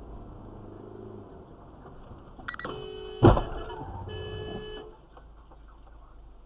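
Steady road and engine noise in a moving car. About two and a half seconds in, a short high beep is followed by a horn-like tone. Just after three seconds comes a sudden loud knock, the loudest sound, and the tone sounds again for under a second.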